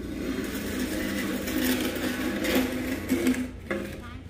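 A small motor running steadily with a slightly wavering pitch, fading out shortly before the end.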